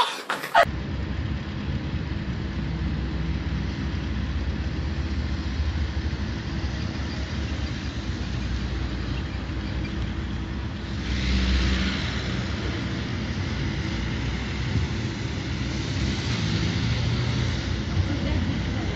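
Road traffic: a steady low rumble of cars going by, with a car passing more loudly about eleven seconds in and another near the end.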